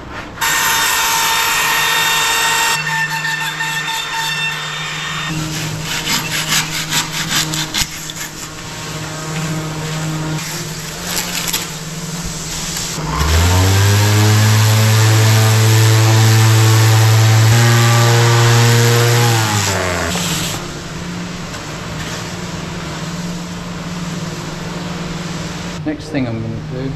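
Cordless trim router whining at high speed as it cuts guidelines into closed-cell urethane foam for about two seconds, followed by scattered clicks and rubbing of the tool on the foam. Later the loudest sound: an electric palm sander spins up, runs steadily for about seven seconds on the foam, and winds down.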